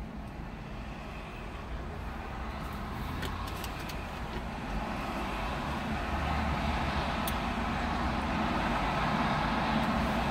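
A car pulling up close by: its engine and tyre noise grows gradually louder over a low steady rumble. A few faint clicks come in the middle.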